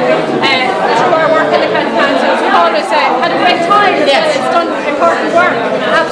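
Speech only: women talking, with the chatter of a crowd around them.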